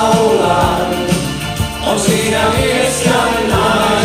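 A pop song sung in Finnish: a lead vocal with choir-like backing voices over a band with a steady drum beat.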